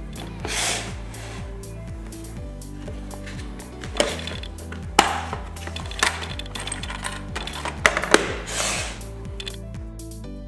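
Background music, over a handful of sharp plastic clicks and rattles as a Dremel accessory case is opened and a sanding drum bit is picked out of it.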